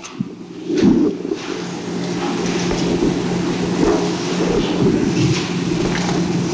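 A dense, low rumbling noise starts about a second in and holds steady, as loud as the speech around it, with a few faint clicks.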